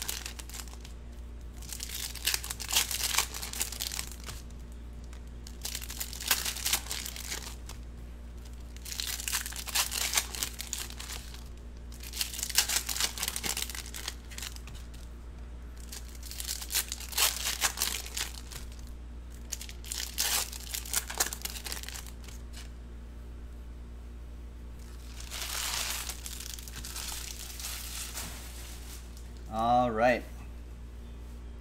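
Plastic trading-card pack wrappers being torn open and crinkled in repeated bursts, about seven in all, each lasting a second or two, a few seconds apart.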